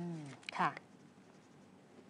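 Speech only: a held "mmm" hesitation sound, then a short spoken word about half a second in, followed by a near-silent pause of just over a second.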